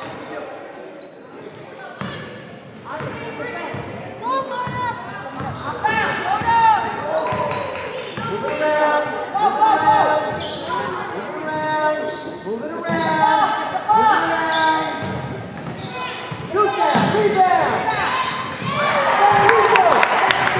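Basketball game sounds in a school gym: the ball bouncing on the hardwood floor, shoes squeaking, and players and spectators calling out, all echoing in the hall. It gets busier and louder near the end.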